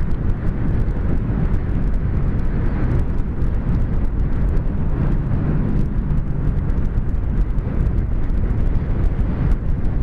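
Motorcycle riding at highway speed, heard from a helmet camera: steady rushing wind over the microphone with crackling buffeting and the engine's drone underneath.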